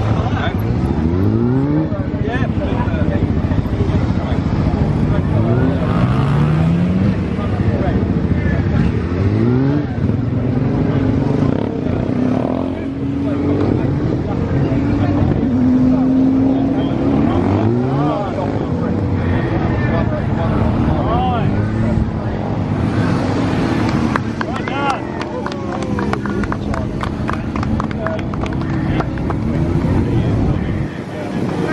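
Suzuki SV650S V-twin engine revving up and dropping back over and over as the motorcycle is ridden hard through tight turns. Each burst of throttle is a rising pitch a few seconds apart, with one longer steady note in the middle.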